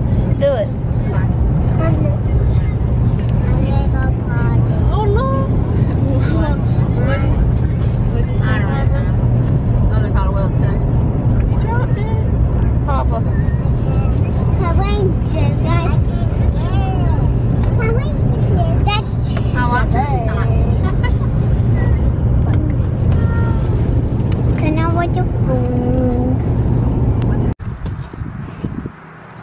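Steady low road and engine rumble inside a moving car's cabin, with young children's high voices chattering over it. Both stop abruptly near the end.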